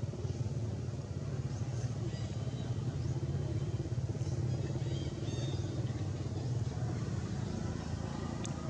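Steady low rumble of a motor vehicle engine running nearby, with a few faint short high-pitched chirps and squeaks over it.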